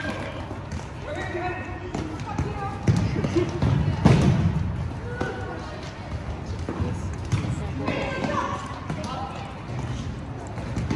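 A futsal ball being kicked and bouncing on a hard gym floor, with a couple of louder thumps about three and four seconds in, echoing in the hall. Indistinct voices of players and spectators call out throughout.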